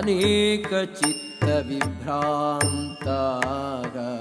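Indian devotional music: a melodic Sanskrit chant with wavering pitch, over regular tabla-like drum strokes.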